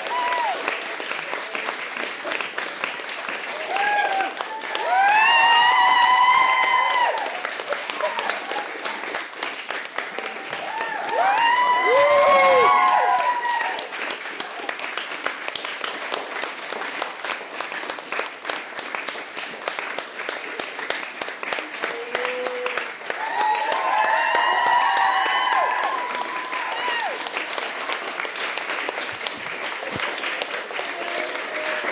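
Audience applauding steadily throughout, with voices calling out over the clapping three times, at its loudest moments.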